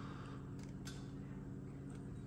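Faint steady low hum with a couple of light ticks: room tone.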